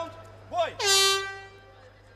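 A brief call, then a loud held signal that drops in pitch at its onset and then holds one note for about half a second before fading, marking the start of an MMA bout.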